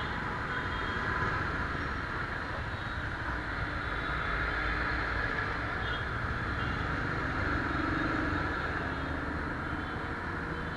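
Steady road traffic noise in a stop-and-go jam: motorcycle and car engines idling and creeping, with faint short beeps about six seconds in.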